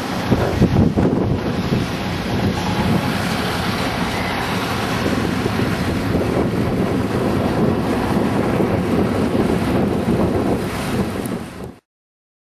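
Wind buffeting the camera microphone: a steady, rumbling noise that cuts off abruptly near the end.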